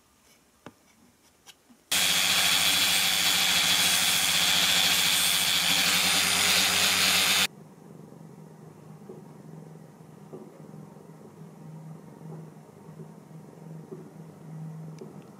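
Angle grinder with a flap disc running at full speed, sanding down the edge of a piece of plexiglass. It starts suddenly about two seconds in, runs steadily and loud for about five seconds, and cuts off abruptly; a faint, uneven low hum follows.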